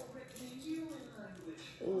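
A woman's soft, low murmuring voice, with the faint hiss of ground black pepper being shaken from a large plastic jar.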